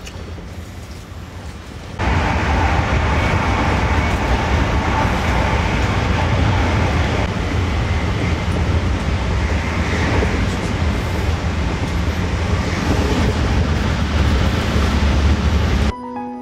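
Passenger train running at speed, heard from inside the carriage: a steady rumble and rushing noise. It is fairly quiet for the first two seconds, then becomes suddenly louder and stays steady.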